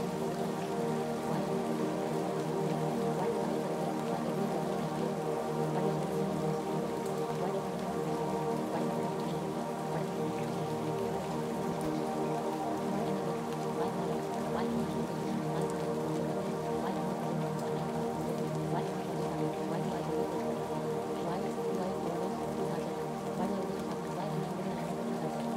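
Steady ambient music of sustained, overlapping drone tones, with a faint pattering like rainfall layered over it.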